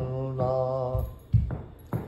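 An elderly man singing a Telugu devotional song in a chant-like style, holding one long steady note that ends about a second in. A quieter pause follows, broken by two short low sounds.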